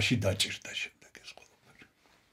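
A man speaking Georgian, one phrase that trails off in the first second, followed by a few faint mouth clicks and breaths.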